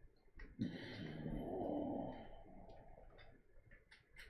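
A long breathy exhale lasting about a second and a half, starting just over half a second in, with faint light ticks before and after it.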